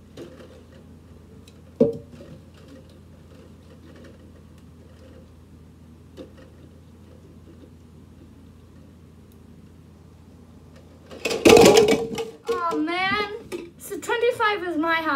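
Red plastic party cups being handled on a tall stacked-cup tower: a sharp plastic click about two seconds in and a few faint taps, then a sudden loud clatter a little after eleven seconds as the tower of cups comes down. A girl's voice follows, sliding up and down in pitch.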